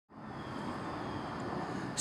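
Steady outdoor background noise, an even rumble that fades in at the very start.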